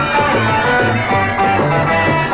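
Merseybeat band playing the instrumental opening of a song: electric guitar over a steady, repeating bass line.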